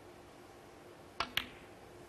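A snooker shot: the cue tip clicks against the cue ball, and a split second later the cue ball clacks into an object ball. Two sharp clicks over a quiet hush.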